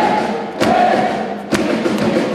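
Large crowd singing a club song together in unison, with held notes over a heavy thumping beat about once a second.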